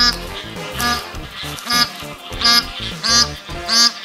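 A bar-headed goose honking, about six short nasal calls in quick succession, over background music.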